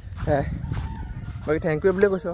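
A rooster crowing in the open air, its call rising near the end, mixed with a man's voice.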